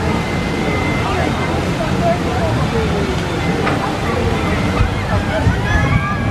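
Steady rushing and splashing water from the Splash Mountain log flume, under the chatter of a crowd; a few voices rise near the end.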